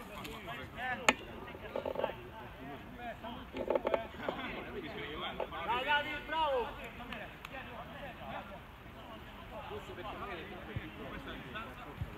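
Distant shouts and calls of football players across an outdoor pitch while a free kick is set up, with one louder call about six seconds in. A single sharp knock sounds about a second in.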